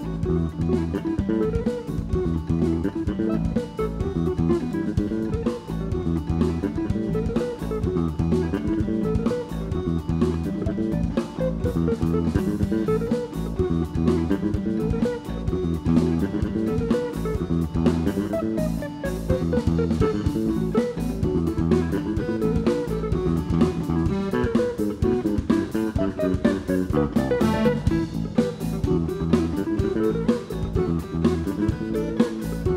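A live rock band playing an instrumental jam: electric guitar repeats a rising and falling run over a steady bass line and driving drum kit.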